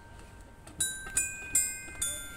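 Bright bell-like chime notes in music: three strikes about half a second apart, starting a little under a second in, each ringing on briefly.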